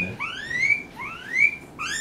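Guinea pig squealing while it is handled: a run of about three short, high, whistle-like squeals, each rising in pitch, repeating at an even pace.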